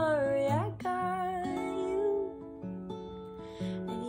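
Acoustic guitar with a capo played as a solo accompaniment, a run of held plucked notes, with a wordless female sung note that dips and rises in pitch in the first second.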